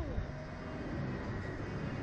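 Wind rumbling over the microphone of a camera mounted on a slingshot ride's open capsule, swinging high in the air. A brief falling whine sounds right at the start.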